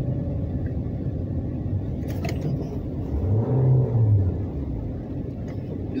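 Car engine and road noise heard from inside the cabin while driving slowly, with the engine note rising and falling briefly about three seconds in. A short click sounds about two seconds in.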